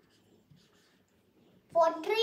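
Faint scratching of a dry-erase marker writing on a whiteboard. Near the end a child's voice starts speaking.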